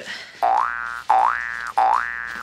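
An edited-in comedy sound effect: the same rising tone played three times in quick succession, each note sliding up and then holding briefly.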